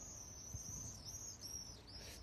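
Faint, steady high-pitched chirping of small creatures over low background noise.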